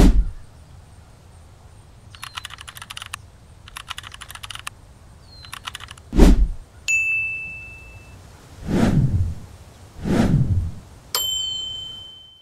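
Edited outro sound effects: two quick runs of keyboard-typing clicks, several falling whooshes with a low thump, and two bright bell dings, the last one ringing out near the end.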